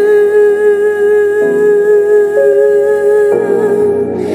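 Tagalog worship song: a singer holds one long, steady note over soft accompaniment, which changes beneath it about halfway through and again near the end.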